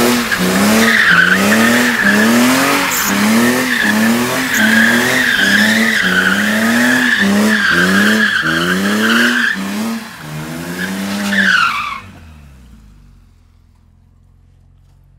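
BMW E46 3 Series doing donuts: the engine revs climb and fall over and over, a little more than once a second, under a continuous high tyre squeal. About twelve seconds in it all stops suddenly, leaving a faint low hum like an idle.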